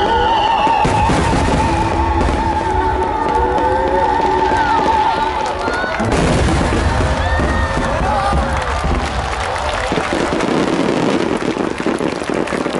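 A volley of large fireworks shells bursts in a continuous low rumble of booms, with music and a held, wavering sung note over it. About halfway through the music drops away, leaving booms and crackle mixed with crowd voices and cheers.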